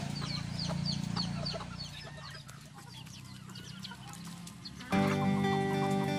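Chickens clucking and calling with quick, repeated short high chirps, fading out after about three seconds. Background music starts abruptly about five seconds in.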